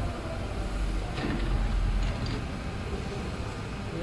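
Low mechanical rumble of an automatic cable coiler's arms being driven back to their start position, heaviest in the first half.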